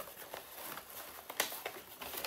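Faint rustling and handling of paper, with a few light taps, one sharper about a second and a half in.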